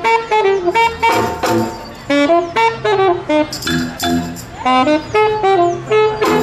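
A street band playing: a saxophone carries the melody in short phrases, with drum beats and low bass notes held underneath.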